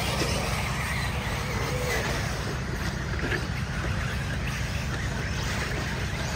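Electric RC off-road buggies racing on a dirt track: faint motor whines rising and falling over a steady low rumble.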